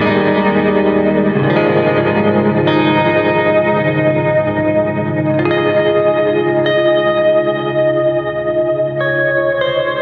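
Electric guitar chords played through a Skylar reverb pedal, ringing out into long reverb washes that overlap from one chord to the next. The chord changes every second or few.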